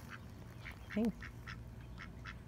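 Ducks quacking in the background, a run of short calls roughly two a second.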